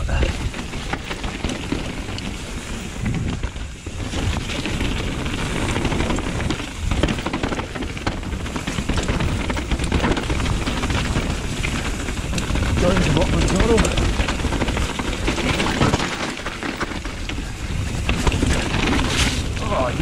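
Mountain bike ridden fast down a dirt and stony forest trail, heard from a chest-mounted camera: tyres rolling over loose ground and the bike rattling, with a steady stream of knocks from bumps and impacts.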